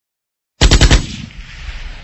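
A short burst of rapid gunfire used as a sound effect: about five shots in under half a second, starting about half a second in, followed by a long echoing tail that fades away.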